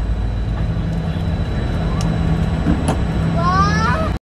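Aircraft cabin noise in flight: a steady low rumble with a steady hum. In the last second a child's voice rises in a short vocal call.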